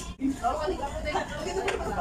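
Indistinct chatter of voices, with a brief dropout in the audio just after the start.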